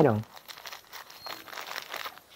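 Plastic shipping mailer bag crinkling and tearing as it is pulled open by hand: quiet, irregular rustles.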